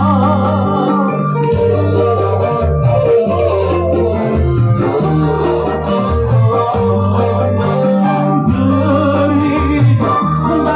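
Live dangdut band playing an instrumental passage: a keyboard with an organ sound carries the melody over a steady bass line that changes note about once a second, with guitar strumming along.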